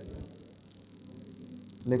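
Faint mouth sounds of a man chewing a mouthful of biryani, over a low steady hum, with a brief soft thump at the start.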